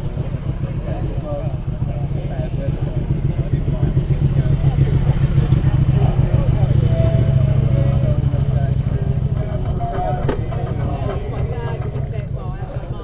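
Motorcycle engine idling steadily, a little louder in the middle.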